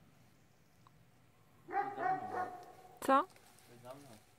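A dog barking: a run of short pitched, wavering calls just before the two-second mark, one loud sharp bark a little after three seconds in, and a weaker one near the end.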